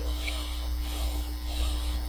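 A slow, deep breath over a steady electrical mains hum. It demonstrates the deep phase of Cheyne-Stokes respiration.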